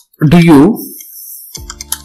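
Computer keyboard typing: a quick run of key clicks in the second half, as words are typed in.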